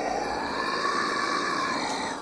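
A harsh, sustained wailing cry voicing the creature puppet. Its pitch rises slowly and it cuts off suddenly at the end.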